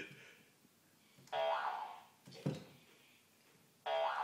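Sound effect from the Tobii eye-control device's speaker as the game responds: a sudden pitched tone about a second in that fades out over about a second, a short click a little later, and another tone starting near the end.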